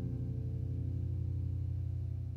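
The final chord of an acoustic guitar song ringing out and slowly dying away, with a slight wavering in its low notes.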